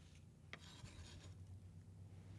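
Near silence: a faint knife tap on a wooden cutting board about half a second in, then soft rubbing as sliced onion is handled and separated.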